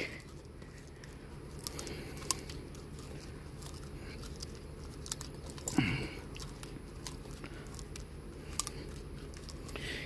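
Faint handling sounds of nylon trimmer line being wound by hand onto a plastic Stihl AutoCut trimmer-head spool: light rubbing with scattered small plastic clicks. A brief vocal sound comes about six seconds in.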